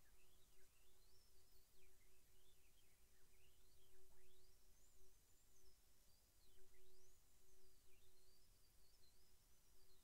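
Near silence: faint room tone, with a thin whistle sweeping up and down throughout and a faint steady low hum that breaks off now and then.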